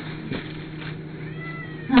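A cat meowing: one faint, short, high call a little past the middle.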